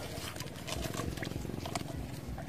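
Hands rummaging in a brush-pile fish trap of sticks and leafy branches standing in shallow water: irregular rustling, snapping and small splashes. A steady low rumble of wind on the microphone runs underneath.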